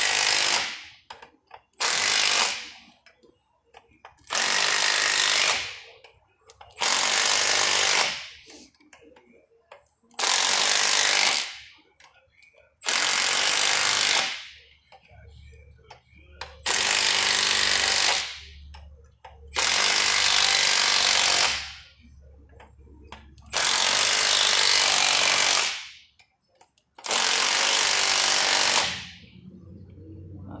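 Cordless impact wrench hammering in about ten bursts of one to two seconds each, driving the bolts of a bearing puller to draw a roller bearing off a shaker box shaft.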